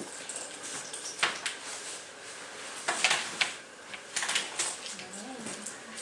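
A search dog working a scent search, with short irregular bursts of sniffing and movement on a concrete floor, a few close together about three and four seconds in.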